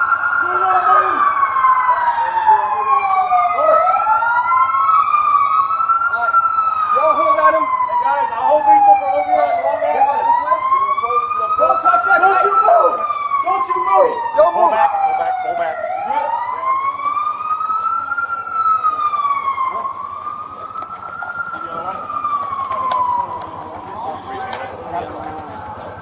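Emergency-vehicle sirens wailing: at least two overlapping wails, each rising and falling slowly over a few seconds. They die away shortly before the end.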